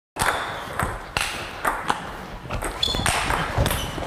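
Table tennis ball being hit back and forth in a rally: a run of sharp clicks off paddles and table tops, about two a second.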